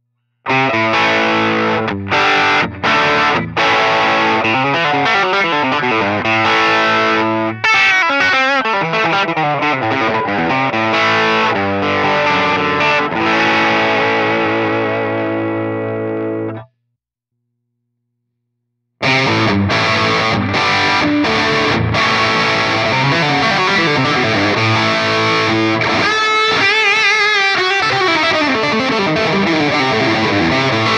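Electric guitar played through a Line 6 POD Express amp-and-effects modeler, demonstrating preset tones. One passage plays for about sixteen seconds and dies away, and after a two-second silence a second passage with another tone begins.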